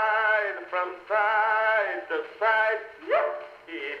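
Ragtime song sung by a man, played back from an early wax-era cylinder record on an Edison Standard Model D phonograph through its horn. The sound is thin and narrow, with no deep bass.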